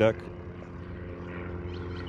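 Steady low drone of a distant engine, even in pitch and level throughout.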